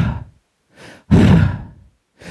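A man's loud, drawn-out, exasperated sighs, acted out to show impatience, picked up close on a headset microphone. There is one sigh right at the start and a longer one about a second in.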